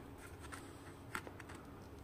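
Faint handling of a cardboard box: fingers rubbing and tapping on the cardboard, with a few small clicks, the sharpest about a second in.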